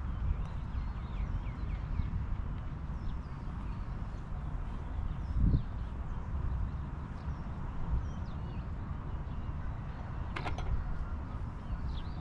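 Small birds chirping over a steady low rumble, with a dull thump about five and a half seconds in and a sharp click near the end.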